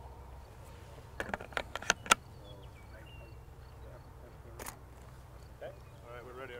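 Canon EOS 5D Mark III DSLR shutter firing: a quick run of about six sharp clicks starting a little over a second in, then one more single click past the middle, over a steady low rumble.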